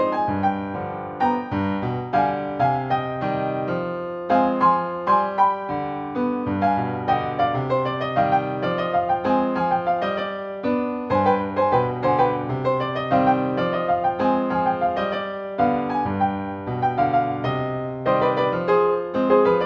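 Solo piano played back from MIDI, a salsa song arranged for two hands: a right-hand melody over a left-hand bass line and chords, with a steady stream of note attacks.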